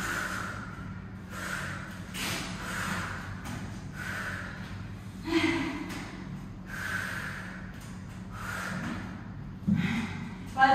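A woman breathing hard while recovering from a high-intensity interval: a run of heavy breaths, about one a second, with a short voiced sound about five seconds in.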